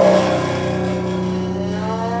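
Acoustic guitar and shakuhachi improvising together. A loud attack at the start rings on as a sustained low note, and about halfway through a pitch begins to glide slowly upward.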